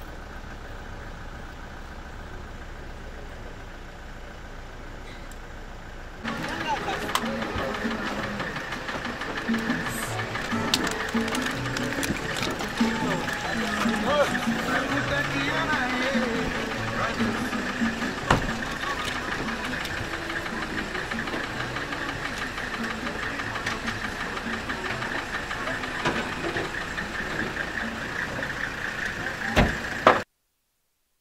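A vehicle engine idling with a low, steady rumble. About six seconds in, the sound jumps louder to people's voices over a steady high-pitched drone.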